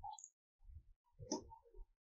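Faint computer mouse clicks and small desk knocks picked up by the narrator's microphone, with one sharper click a little past halfway.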